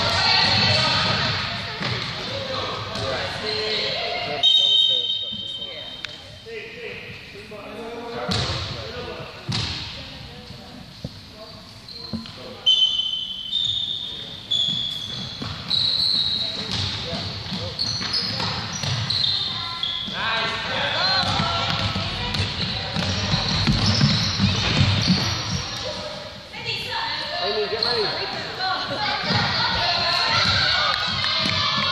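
A basketball bouncing on a wooden gym floor as it is dribbled, mixed with the voices and shouts of young players and onlookers in a large sports hall.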